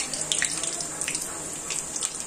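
Sliced onions frying in hot oil in an aluminium kadai: a steady sizzle with scattered crackles and pops.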